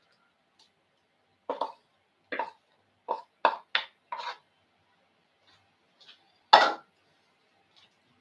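Pineapple chunks being scraped out of a plastic bowl with a wooden spoon and dropping into a frying pan: a run of short knocks and plops, then one louder knock about six and a half seconds in.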